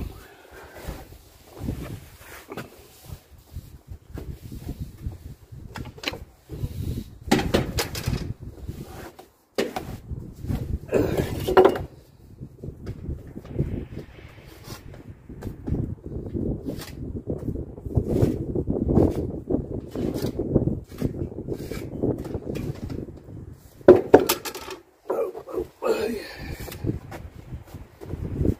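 Metal pointing tools clinking and scraping against a mortar hawk and a metal bucket during brick repointing, in irregular knocks and scrapes. A low rumble lasts several seconds in the middle.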